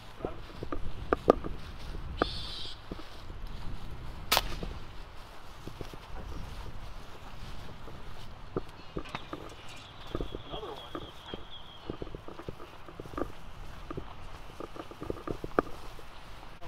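Footsteps and small knocks of carried gear as a person walks over grass and patio paving, with one sharp crack about four seconds in.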